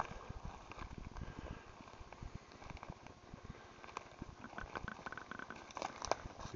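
Footsteps through ferns and leaf litter on the forest floor, with irregular low bumps from a carried camera.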